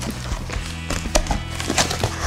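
Cardboard shipping box being opened by hand: its flaps are pulled apart with a series of sharp cardboard clicks and knocks, over steady background music.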